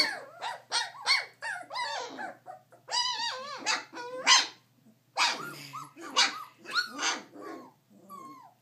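Four-week-old Goldendoodle puppies barking and yipping in a quick run of short, high-pitched calls, one after another.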